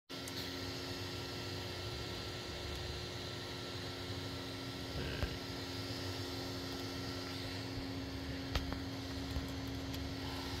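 Creality Ender 3 V3 SE 3D printer running a print: a steady hum from its fans and motors, with a couple of faint clicks.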